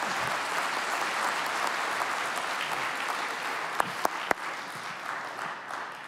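An auditorium audience applauding, steady at first and then dying away over the last second or two. A few sharper claps stand out about four seconds in.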